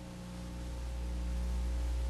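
Steady electrical mains hum with a stack of buzzing overtones and a faint hiss above it: the noise floor of an old recording's sound track.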